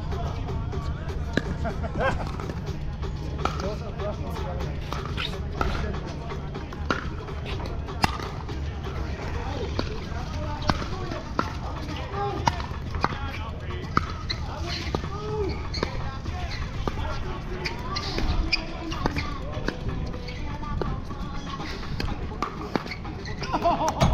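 Pickleball rally: sharp pops of paddles striking a plastic ball and of the ball bouncing on the hard court, at irregular intervals, over a low steady rumble through the first half.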